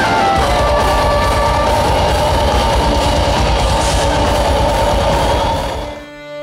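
Folk metal band playing live: distorted electric guitars, bass and drums, with a held melody line over them. The music fades out near the end.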